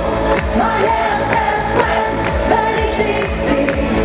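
A female schlager singer singing live into a handheld microphone over upbeat pop music with a steady beat.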